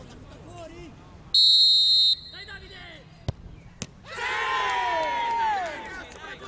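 Referee's whistle blows once for under a second. About two seconds later the penalty is kicked with a sharp knock, and a second knock follows half a second after. Then several spectators shout and cheer for nearly two seconds.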